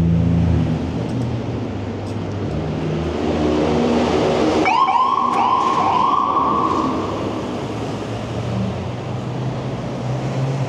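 An emergency vehicle siren sounds a short burst of quick, repeating up-and-down yelps, starting about halfway through and lasting roughly two seconds. It sits over a steady rumble of wind and traffic.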